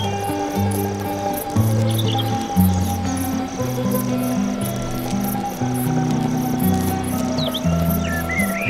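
Crickets chirping in a steady pulse, about three chirps a second, over music of slow, low held notes. A bird chirps briefly twice.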